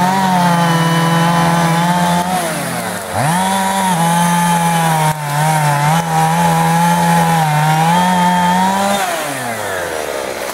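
Two-stroke chainsaw running at high revs. About two and a half seconds in it drops off and quickly revs back up, and near the end it falls back toward idle.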